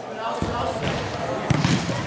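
A football struck hard on an indoor pitch: one sharp thud about one and a half seconds in, echoing briefly in the hall over background voices.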